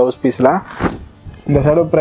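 A man talking, with a short rustle of cloth in a pause near the middle as the linen saree is handled.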